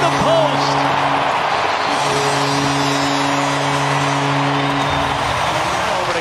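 Hockey arena crowd cheering after a goal while the arena goal horn sounds in long, steady blasts: one cuts off a little over a second in, and a second one runs from about two seconds to five seconds in.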